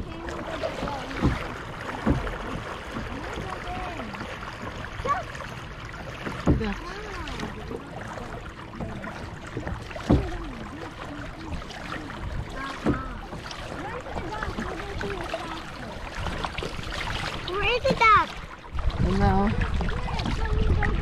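Kayak paddling on a lake: water sloshing along the hull, with a few sharp knocks spaced a few seconds apart, under quiet talking. A high-pitched voice cries out near the end.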